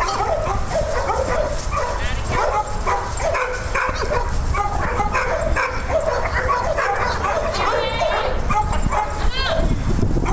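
Many dogs barking over one another in a continuous stream of short, high-pitched barks, over a steady low rumble.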